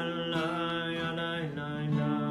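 A man chanting a prayer melody in long held notes while strumming an acoustic guitar.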